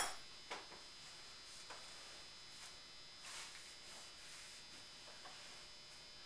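Quiet handling of scissors and canvas cloth on a table: a sharp click right at the start, then a few faint ticks and a soft rustle of the cloth, over a faint steady high-pitched tone.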